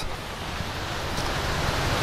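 Steady rushing of wind on a clip-on microphone, slowly growing louder.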